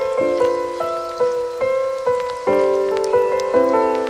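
Slow lo-fi downtempo jazz: soft chords struck about once a second and left to ring, over a faint crackling, rain-like texture.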